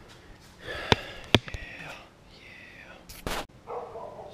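Camera handling noise as the camera is moved and turned: two sharp clicks about a second in, a louder rustling thump near the end, and faint low voice sounds in between.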